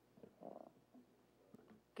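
Near silence: hearing-room tone, with a faint, brief indistinct sound about half a second in.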